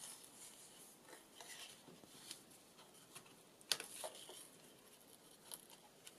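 Faint rustling of paper and card with a few small, sharp clicks, the sharpest about two-thirds of the way through, as fingers handle a paper folio and wind string around its button closure.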